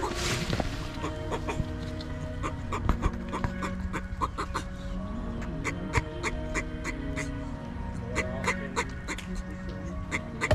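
A tortoise clucking repeatedly while mounting a female during mating, short sharp clucks coming a few times a second, over background music.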